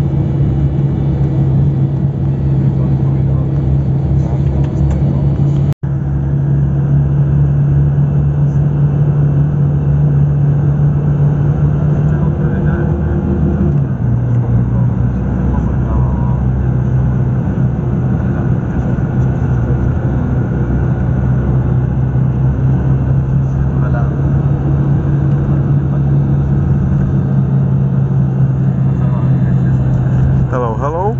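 Road vehicle's engine running steadily at cruising speed, heard from inside the cabin as a loud low drone with road noise. The engine note drops in pitch about fourteen seconds in, and the sound cuts out for an instant about six seconds in.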